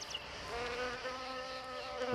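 A buzzing insect, such as a fly or mosquito: a steady, even hum that firms up about half a second in.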